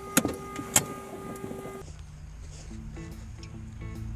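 A steady whine in the cockpit of a parked Beechcraft Baron, with two or three sharp clicks. After about two seconds it cuts off abruptly to a quieter low rumble with faint music.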